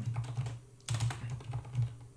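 Typing on a computer keyboard: a quick run of key clicks, with a short pause about half a second in before the clicking resumes.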